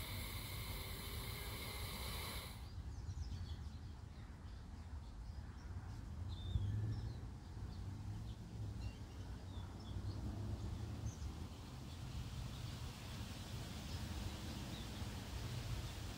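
Slow breathing through one nostril: a hissing nasal inhale that cuts off sharply about two and a half seconds in as the breath is held. A fainter, longer airy exhale through the nose builds over the second half, over a quiet outdoor background.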